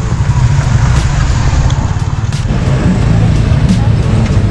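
City street traffic, cars and motorbikes going by, with a steady low rumble throughout.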